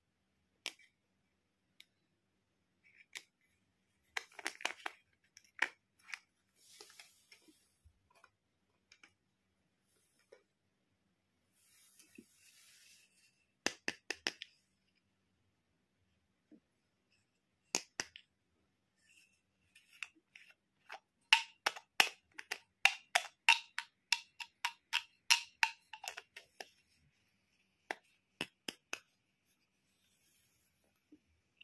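Small plastic toy medicine bottle handled close to the microphone: scattered sharp plastic clicks and taps, with two brief faint rubbing sounds early on and a quick run of clicks, about four a second, past the middle.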